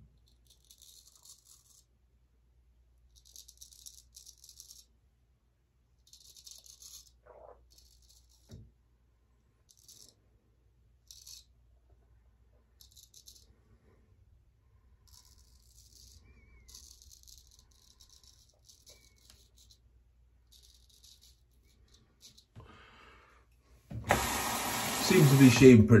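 Freshly honed straight razor cutting through lathered stubble: short, light scraping strokes in quick runs, with pauses between them. Near the end, a brief, much louder rush of noise.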